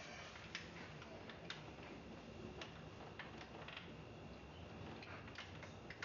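Quiet room tone with a few faint, irregularly spaced clicks.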